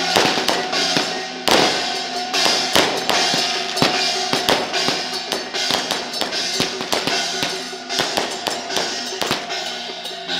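Temple-procession percussion: drums and brass hand cymbals struck in a fast, uneven clatter of beats, with a held tone sounding underneath.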